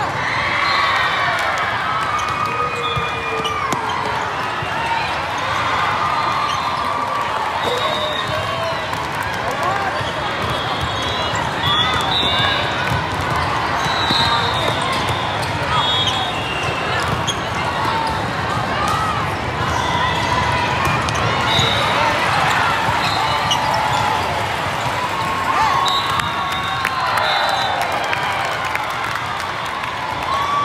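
Many overlapping voices of players and spectators in a large hall, with volleyballs being hit and bouncing on the court floor.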